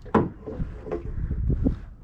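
Knocks and bumps from gear and feet in a small fishing boat: one sharp knock just after the start, then several duller thumps.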